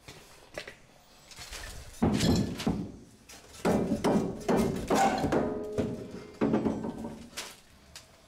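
Galvanized steel water pipe grabbed and shaken by hand, knocking and rattling against the plywood wall in four or five separate bursts with a faint metallic ring.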